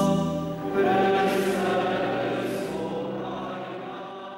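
Choral music with slow, sustained sung notes, a new phrase entering just under a second in, fading out steadily toward the end.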